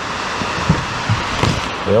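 Steady hiss of rain, with paper record sleeves being handled and a few soft knocks.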